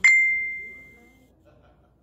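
A single bright metallic ding: a short sharp knock, then one clear high ring that fades out over about a second.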